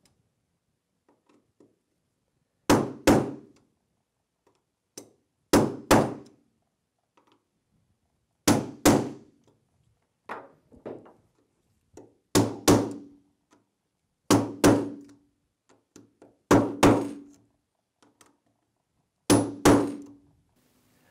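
Rubber mallet striking the handle of a Phillips screwdriver whose tip is set on a metal screen frame, staking the metal over the drilled holes so the corner keys stay in place. The taps come in pairs of two quick strikes every two to three seconds, and the later strikes carry a short ringing tone.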